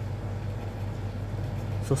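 A steady low hum, with faint felt-tip marker strokes on paper; a man's voice starts right at the end.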